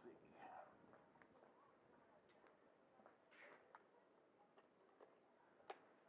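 Near silence, with a few faint clicks and handling noises and one sharper click near the end.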